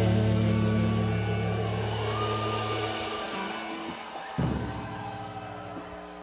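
A live rock band's closing chord ringing out with held, sustained notes and fading away; about four and a half seconds in a second, quieter chord is struck and rings on.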